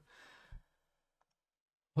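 A man's faint breathy exhale, like a short sigh, with a soft low thump about half a second in, then near silence until speech starts again at the very end.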